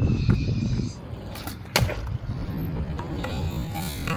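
Skateboard wheels rolling on a concrete skatepark surface in a steady low rumble, with a sharp clack a little under two seconds in.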